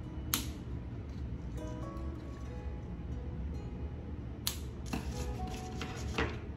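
Soft background music with a few sharp clicks: scissors snipping jute twine, one snip about a third of a second in and a few more clicks near the end.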